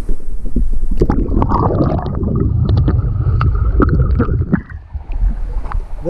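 Pool water sloshing, gurgling and splashing against an action camera held at the waterline beside two swimming huskies. For a few seconds from about a second in, the sound turns dull and muffled as the camera dips under the surface.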